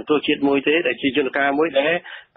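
Speech only: a radio news broadcaster talking continuously in Khmer.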